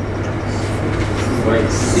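Steady low room hum with an even background noise during a pause in a man's speech; his next words begin near the end.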